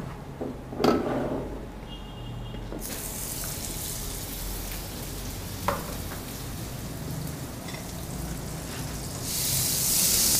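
Butter sizzling as it melts in a hot square nonstick skillet: a knock about a second in, then a hiss that starts about three seconds in and grows louder near the end as the butter foams.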